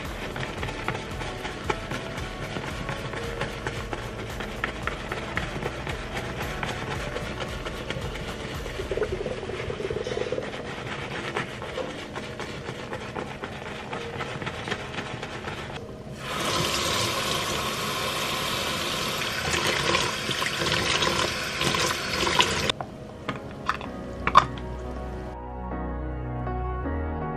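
A wet, soapy makeup brush being swirled and scrubbed on a silicone brush-cleaning pad in a sink, giving a fine, busy wet texture. About sixteen seconds in, a faucet runs for about six seconds, then a few light knocks near the end. Background music plays underneath.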